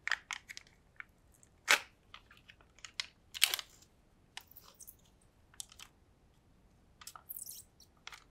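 Foil lid of a small plastic dipping-sauce tub being peeled back, close-miked: scattered sharp crinkles and crackles, the loudest about two seconds in and again about three and a half seconds in, with a soft rustle near the end.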